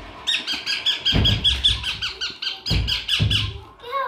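Young lutino ringneck parakeet giving a rapid run of short, high calls, about six a second for some three seconds, with a few low thumps underneath.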